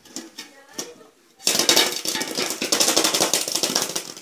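A metal tin shaken hard with a phone inside, rattling rapidly and loudly from about a second and a half in, after a few lighter knocks.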